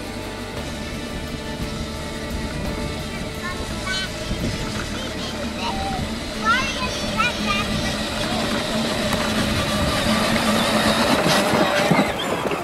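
Battery-powered ride-on toy vehicles, a toy Jeep and a John Deere Gator, driving over grass with a steady electric motor and gearbox whine that grows louder as they come closer. Small children's voices squeal briefly in the middle, and a song is still fading out at the start.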